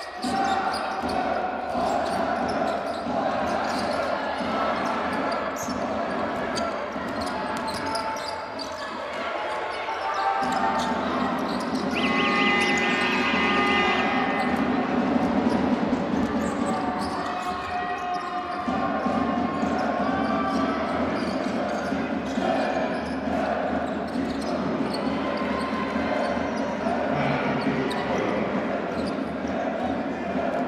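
Basketball bouncing on a hardwood court as players dribble during live game play, with short sharp impacts and voices ringing through a large indoor arena. A brief high-pitched sound comes about twelve seconds in.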